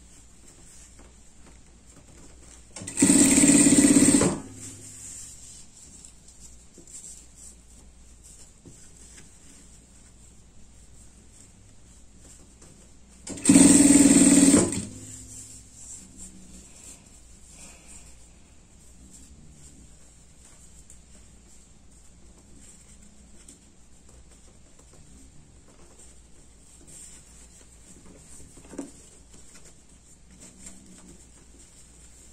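Industrial sewing machine stitching in two short runs of a little over a second each, about ten seconds apart, each starting and stopping abruptly.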